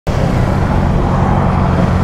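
Two motorcycles, a Kawasaki Z650 parallel-twin and a Honda CBR650R inline-four, cruising side by side at a steady speed: an even engine drone with steady road and wind rush, no revving.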